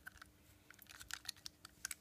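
Faint, quick clicks and taps of a Hornby model locomotive being handled, mostly in the second half.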